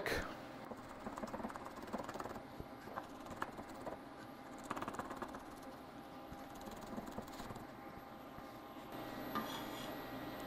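Chef's knife mincing garlic on a wooden cutting board: faint, irregular taps and scrapes of the blade on the board.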